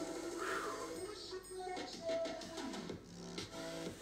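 Background music with held tones; a regular beat comes in about three seconds in.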